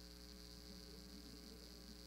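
Near silence with a steady low electrical hum, mains hum in the recording's audio line.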